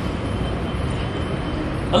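Steady background noise, an even rushing hiss with a low rumble and no distinct events. A man's voice starts at the very end.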